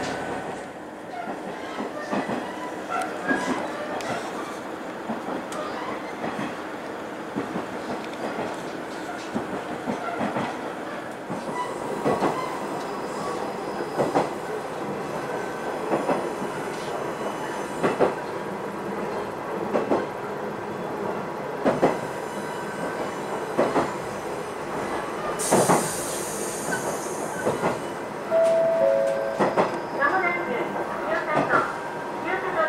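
Diesel railcar running slowly down a grade, its wheels knocking over rail joints about every two seconds, under a steady running noise. Near the end comes a brief hiss, then two short steady tones.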